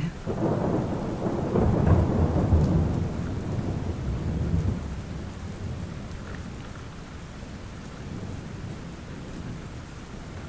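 Rain falling steadily with a long roll of thunder that rumbles in at the start and dies away over about five seconds, leaving only the rain.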